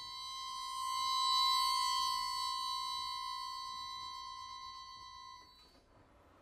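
Button accordion holding one long, high sustained note, swelling then slowly fading. The note cuts off about five and a half seconds in, leaving near silence.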